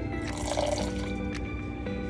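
Water poured from an electric kettle into a steel saucepan of sugar, a short splashing pour in the first second, over background music.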